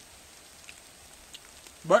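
Faint steady rain with a few light drips, heard during a pause in speech.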